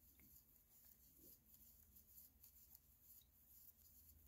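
Near silence: room tone with faint rustling of yarn on a crochet hook as a chain is worked.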